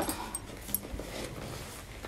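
Quiet room with faint rustling and a few light clicks as a person gets up from a seat.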